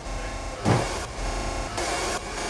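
Edited sound-design transition effects: a whoosh a little over half a second in and another near the end, over a steady electronic hum.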